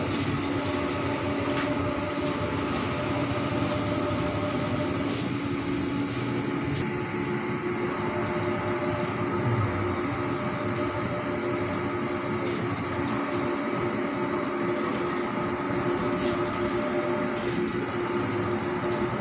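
Large-format flex banner printer running, its print-head carriage travelling along the rail, giving a steady mechanical hum with a few faint clicks.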